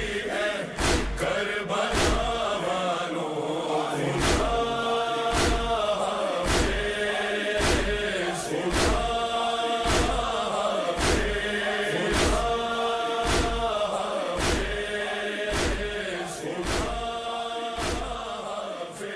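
A group of men chanting a noha in unison, with sharp rhythmic chest-beating (matam) slaps about once a second keeping the beat. The sound fades slightly near the end.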